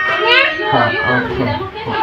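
A toddler babbling and vocalizing, with a man's voice talking alongside.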